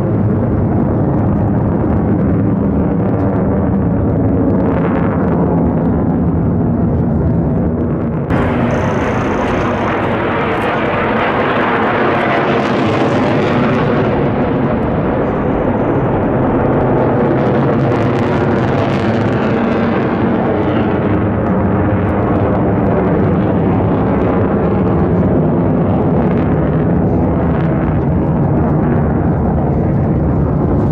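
F-35 fighter jet engine roaring loudly and steadily overhead. About eight seconds in the sound suddenly turns brighter and hissier, then swells twice and eases as the jet manoeuvres.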